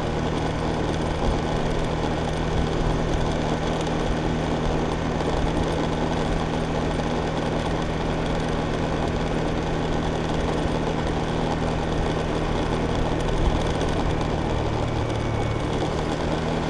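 Small motorbike engine running steadily while riding along at an even speed, a constant drone with road noise mixed in.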